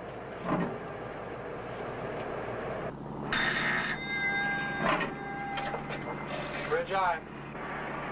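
Background noise of a ship's bridge with low, indistinct men's voices. A steady tone of a few fixed pitches, like an electronic buzzer or alarm, sounds for about two seconds in the middle. A voice comes through briefly near the end.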